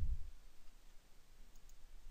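A few faint clicks of a computer mouse, close to silence.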